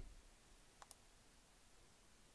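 Near silence: faint room tone, with one quiet double click a little under a second in.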